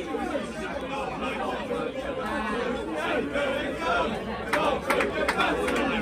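Crowd chatter: many people talking at once, overlapping voices with no single voice standing out, at a steady level.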